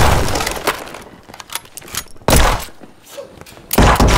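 Handgun shots: the tail of one fired just before rings out at the start, then two more, about two seconds in and near the end, each with a crashing tail like breaking glass.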